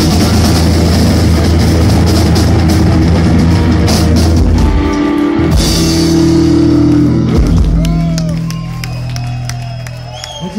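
Rock band playing live and loud through the venue's amplification, electric guitars and drums together on held, ringing chords. The band sound dies away about 8 seconds in, and shouts and whoops from the crowd rise over the fading ring near the end.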